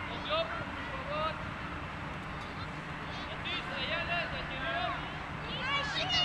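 Children's voices calling and shouting across a football pitch during play, high-pitched and too far off to make out words, over a steady low hum.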